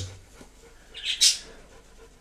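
Mostly quiet, with one short high-pitched chirp about a second in.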